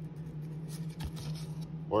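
Glossy baseball cards sliding against each other as a stack is flipped through by hand: faint scratchy rustling with a small click about a second in, over a steady low hum.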